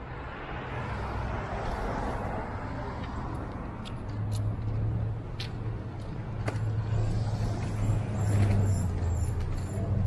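City street traffic: vehicles passing, with a low engine hum that builds through the second half.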